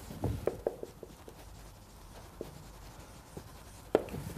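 Marker writing on a whiteboard: a quick run of short taps and strokes in the first second or so, then a few sparser ones.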